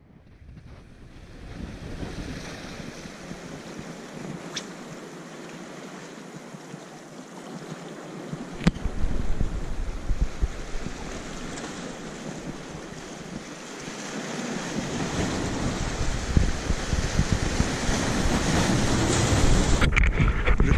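Sea waves washing over a rocky shore, with wind buffeting the microphone in rumbling gusts that grow stronger toward the end.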